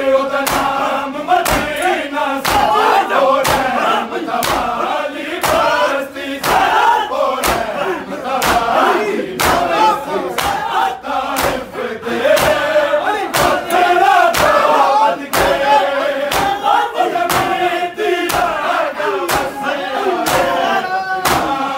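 A group of men chanting a noha together in a loud, sung lament, with sharp hand slaps on bare chests (matam) keeping a steady beat of about two a second.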